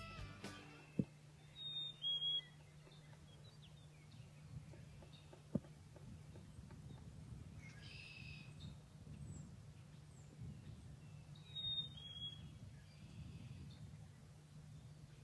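Quiet outdoor ambience with a steady low hum. Birds chirp in short, high two-note calls, once about two seconds in and again near the end, with a fainter call around eight seconds.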